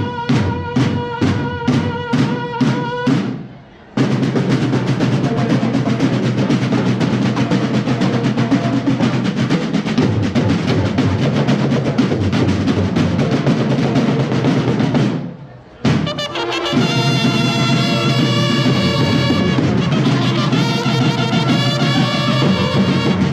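School drum and bugle corps (banda de guerra) playing. The bugles blast short repeated notes about twice a second with the drums and stop about three seconds in. Continuous drumming follows until a brief break near the middle, then the bugles sound held notes over the drums to the end.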